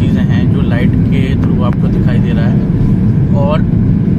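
Loud, steady low rumble inside an airliner cabin at a window seat beside the jet engine: engine and airflow noise with strong wind and rain on the fuselage as the plane flies through a storm. Voices come over it now and then.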